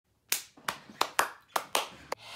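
A person clapping hands six times, sharp separate claps in an uneven rhythm.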